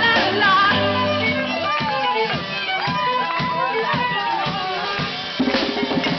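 Live folk street band playing a dance tune: violin and accordion melody over drums, the drums getting louder near the end.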